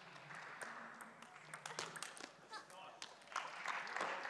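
Table tennis ball clicking sharply off bats and table in a rally, several irregular ticks a fraction of a second apart, over a low arena murmur. Applause starts up near the end as the point is won.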